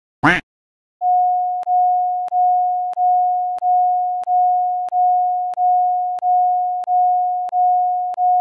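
Electronic sound effect: a short, loud blip with a quick pitch sweep, then a single steady mid-pitched beep tone that starts a second in. The tone is re-struck about one and a half times a second, each stroke fading a little before the next.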